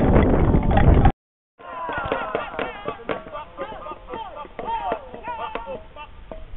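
A group of performers stamping and knocking on a stone floor, dense and loud, cut off abruptly about a second in. After a brief silence, several voices call out in long sliding cries over scattered sharp knocks.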